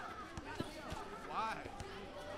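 Gym ambience: background voices with a few sharp thuds and knocks, typical of weights being set down.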